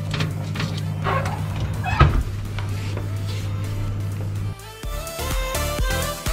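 Steady electrical hum of a domestic oven with its door open, and a single sharp knock about two seconds in as the oven door is shut. Near the end the hum gives way to background music with stepped, plucked-sounding notes.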